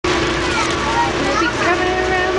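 Indistinct chatter of children's and adults' voices in a passenger train car, over a steady low hum.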